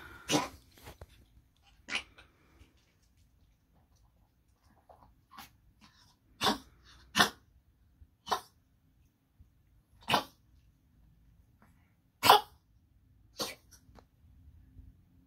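Yorkshire terrier coughing in short, harsh bursts, about nine of them spaced irregularly. It is a breathing fit brought on by excited barking, in a small dog whose breaths are short and shallow.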